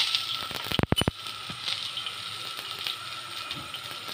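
Green chillies sizzling in oil on a hot tawa, a steady frying hiss. A quick run of sharp clicks comes about a second in.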